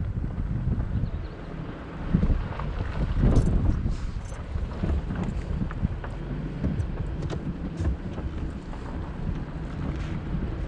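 Wind buffeting the microphone of a camera on a slow-moving vehicle, a gusty low rumble over the vehicle's running noise. It swells louder a couple of seconds in.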